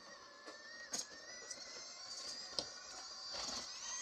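Axial AX24 micro RC crawler's Micro Komodo brushless motor and gears whining in a thin, wavering high pitch as it crawls over the course. A few sharp clicks come from the chassis and tyres, the loudest about a second in.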